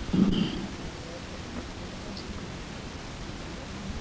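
Steady hiss and low rumble of an old 1971 interview tape recording, heard in a pause in the speech. A brief voiced sound from the man comes just after the start.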